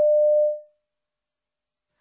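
A single electronic beep: one steady pure tone lasting under a second that fades out, the test's signal marking the end of the one-minute reading time and the start of the recording.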